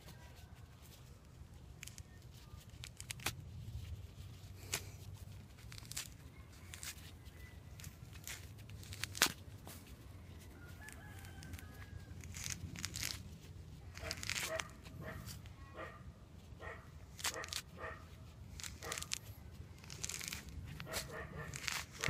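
Fingers peeling the thick rind off a large lime, with irregular small crackles and tearing clicks as the peel comes away. Chickens call faintly in the background, a few times.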